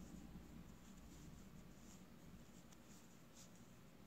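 Faint scratching of wooden knitting needles and wool yarn as stitches are worked by hand, a few light scrapes in an otherwise very quiet room.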